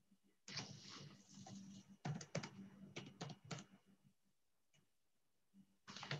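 Soft rustling for about a second and a half, then a quick run of sharp clicks and taps, with a few more clicks at the very end, over a faint steady low hum.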